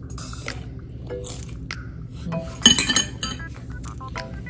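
Metal chopsticks clinking against a ceramic bowl while eating, a few light taps and one louder, ringing clink about two and a half seconds in.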